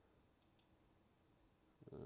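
Near silence: room tone, with two faint clicks about half a second in, from a computer mouse.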